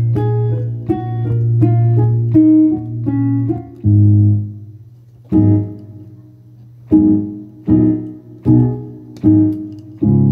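Piano playing: a quick run of notes over a held bass for about four seconds, then separate chords struck with pauses between them, each ringing and fading. The last four chords come a little under a second apart.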